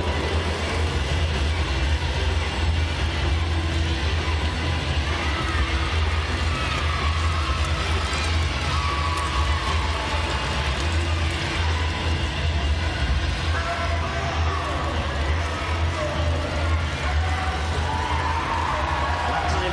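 Indoor speed-skating arena ambience: background music playing over a steady low hum, with a faint crowd murmur.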